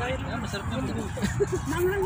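Background chatter of several voices over a steady low rumble.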